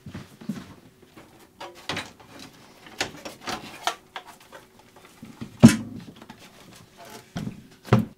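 Handling noise as a PC power supply is unplugged and pulled out of the case: scattered clicks, knocks and rustles of cables and plastic, with one loud thump a little after halfway through.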